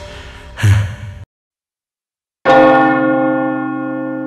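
Dramatic trailer music with a low hit ends abruptly about a second in. After a second of silence, a single struck bell-like chime rings out and slowly fades: a logo sting.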